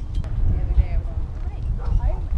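Distant voices calling out over a steady low rumble of wind buffeting the microphone, with a couple of sharp clicks at the very start.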